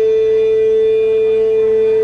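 Live blues band holding one long, steady high note, a single unwavering pitch with little else under it.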